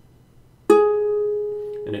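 One fretted note plucked on a guitar string, a little under a second in, ringing and slowly fading. The finger pressed on the fretboard shortens the vibrating length of the string, which sets up different standing waves and changes the note.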